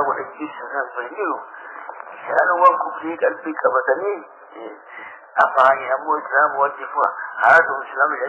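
Speech: a man lecturing, on a muffled, radio-like recording with no high tones.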